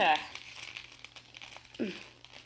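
Sheet of white origami paper rustling and crinkling as it is handled and folded by hand, in faint uneven bursts.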